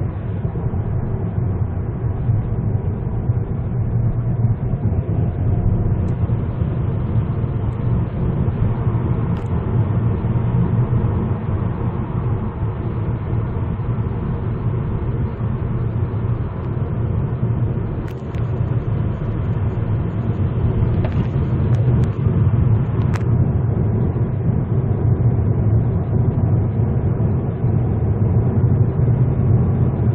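Steady low road and engine rumble heard inside the cabin of a 2010 Hyundai Avante MD (Elantra) driving at speed. A few faint clicks come through about two-thirds of the way in.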